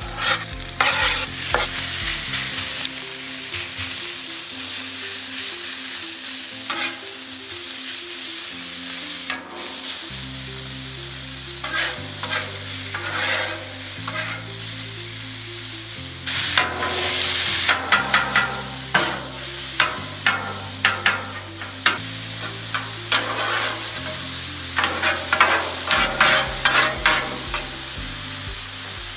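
Shaved ribeye sizzling on a hot Blackstone flat-top griddle, with metal spatulas scraping and clacking on the steel plate as the meat is chopped and turned. The clacks come thickest about two-thirds of the way through and again near the end.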